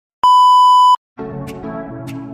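Colour-bar test-pattern tone: one steady electronic beep lasting under a second. After a brief silence, electronic music with a regular beat starts.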